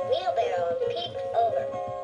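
Music with a sung melody playing from the speaker of a battery-operated story-reading Peter Rabbit soft toy.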